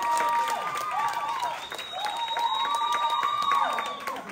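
A small audience clapping, with drawn-out cheering whoops from several voices over the claps. It dies down near the end.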